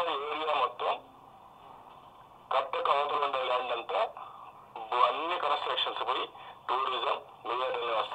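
Speech only: a man talking in Telugu, played from a laptop's speaker, sounding thin like a radio. There is a pause of about a second and a half shortly after the start.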